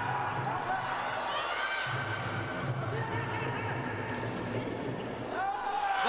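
Indoor volleyball rally: ball strikes and bounces echo in the sports hall over the voices and shouts of the crowd, with a steady low rumble beneath.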